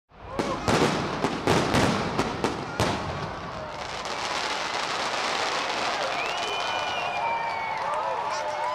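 Fireworks display: a quick series of sharp bangs over the first three seconds, then a dense, steady crackling, with a few voices of onlookers near the end.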